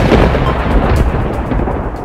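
A loud, deep rumbling sound effect in a logo intro, fading away over the two seconds.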